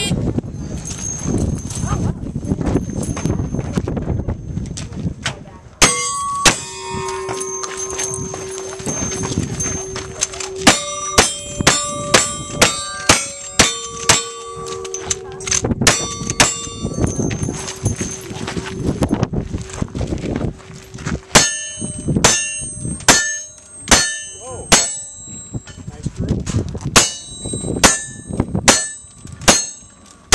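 A cowboy action shooting string: a long series of gunshots from a lever-action rifle and other single-action guns, each followed by the ringing of steel targets. The shots begin about six seconds in, spaced about half a second apart, and come faster and sharper in the second half.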